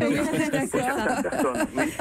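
Speech only: several voices talking over one another, with some laughter.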